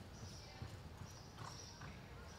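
A horse's hooves falling on the soft dirt of an arena as it lopes: quiet, muffled thuds, with a few sharper hits in the middle.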